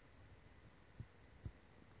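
Near silence: faint room tone with two soft low thumps, one about a second in and another half a second later.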